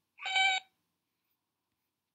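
One short electronic beep, about half a second long: a cartoon robot's beeping voice.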